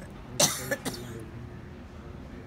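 A person coughing close to the microphone: one loud cough about half a second in, followed by two smaller ones.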